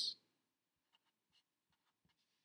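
Fine-point Sharpie marker writing on paper: a few faint, short scratches of the felt tip.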